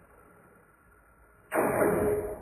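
Slowed-down vocoded audio: faint for the first second and a half, then a sudden loud burst that comes through the vocoder as a held synth chord of two steady notes.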